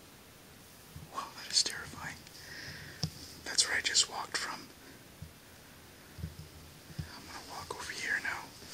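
A person whispering, in two short hissy stretches about one and a half and four seconds in.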